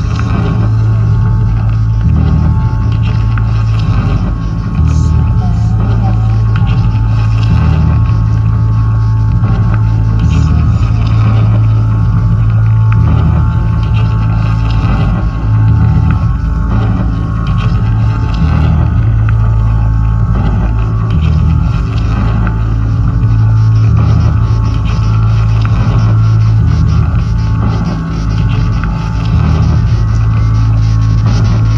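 Loud electronic music played through outdoor PA speakers: a deep, steady bass drone that shifts from note to note in steps, with a faint high steady tone above it.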